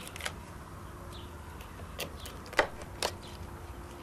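A chef's knife cracking through the shell of a parboiled lobster as it is cut lengthwise in half: a handful of short, sharp clicks and cracks, spaced irregularly, over a low steady hum.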